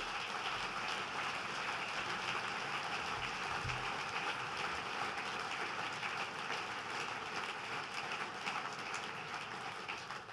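Large audience applauding, a steady dense clapping that eases off near the end.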